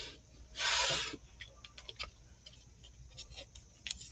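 Blue painter's tape ripped off the roll in one short burst about half a second in, followed by a few faint clicks and taps as the tape and roll are handled.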